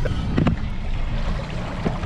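Wind buffeting the microphone on an open fishing boat over calm water, a steady low rumble, with a short knock about half a second in.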